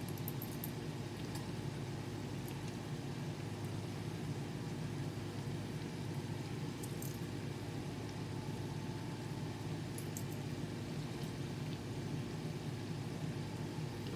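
Steady low background hum with a few faint, short clicks near the start and about halfway through.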